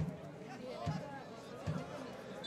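Stadium crowd ambience at a soccer match: a drum in the stands beaten steadily about once a second, under faint distant voices and shouts.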